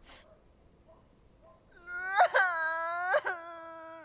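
A young woman crying aloud in drawn-out wailing sobs, starting about two seconds in after a near-silent pause.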